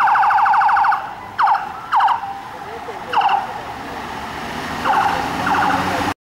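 Police vehicle siren: a rapid warbling yelp for about a second, then about five short separate whoops.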